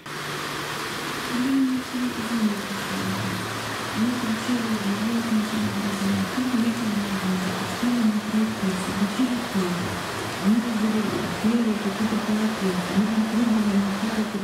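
Background music: a slow, wavering melody over a steady hiss.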